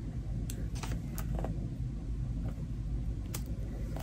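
Several light clicks and taps of stamps and craft supplies being handled on a desk, over a low steady rumble.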